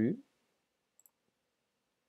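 A single faint mouse click about a second in, picking Paste from a right-click menu, against near silence.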